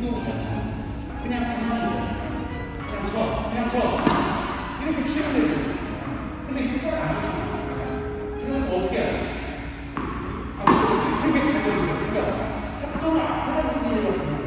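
A voice speaking Korean over background music, in a large indoor hall. A sharp knock comes about ten and a half seconds in, with a few other thuds: tennis balls being hit or bouncing on the hard court.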